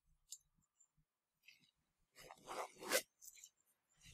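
Faint rustling of clothing being taken off: a few short rustles and scrapes bunched together past the halfway point.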